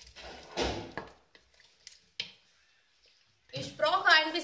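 Spoon stirring thick curry in a stainless steel pressure-cooker pot, scraping for about a second, then a few light clicks and one sharp clink of the spoon against the pot about two seconds in.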